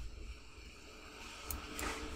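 Low room hiss with a couple of faint, sharp computer-mouse clicks near the end, as the model is dragged and released.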